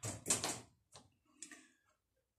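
New rubber oven door seal being fitted: a few short clicks and scrapes as its clips are pushed into the anchor holes around the oven opening. The sound stops abruptly near the end.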